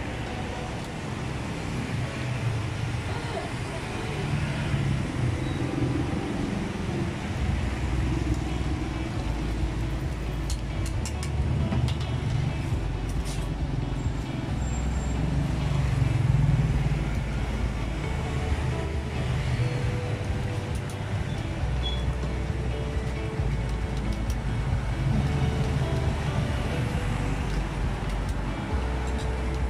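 Road traffic passing close by: a steady low rumble of car and truck engines that swells and fades as vehicles go past, with a few sharp clicks near the middle.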